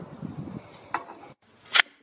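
Low scraping and rustling, like a spade working in earth, with a small click about a second in. After a brief silence comes a short, sharp burst near the end.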